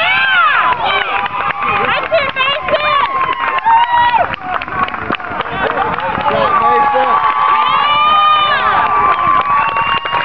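Spectators yelling and cheering, many voices shouting over one another, with long drawn-out shouts in the last few seconds.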